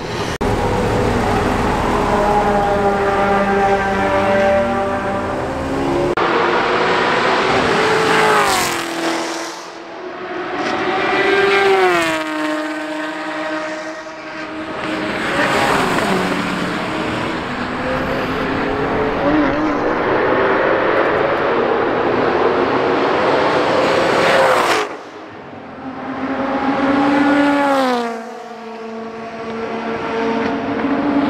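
Several sports cars driving past one after another, each engine note rising and then dropping in pitch as it goes by; there are about four clear passes.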